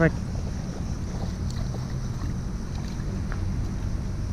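Steady low rumble of wind buffeting the microphone, with a few faint ticks scattered through it.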